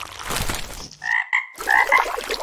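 A frog croaking: a quick run of short croaks, starting about halfway in.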